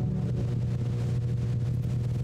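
The last held keyboard chord dies away at the start, leaving a steady low electrical hum from the sound system.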